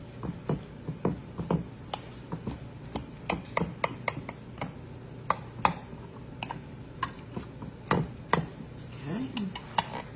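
A table knife cutting through a layered dessert in a glass baking dish: irregular clicks and knocks as the blade crunches through crumbled cookie topping and taps and scrapes the glass.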